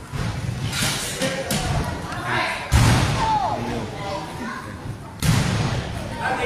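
Two loud thuds of wrestlers' bodies slamming onto the wrestling ring's mat, the first a little under three seconds in and the second about two and a half seconds later.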